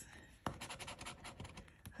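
Scratch-off lottery ticket having its silver coating scratched away in quick, faint, repeated strokes, starting about half a second in.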